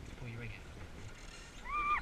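A brief high squeal near the end, rising, holding and then dropping away sharply, after a faint low murmur of a voice.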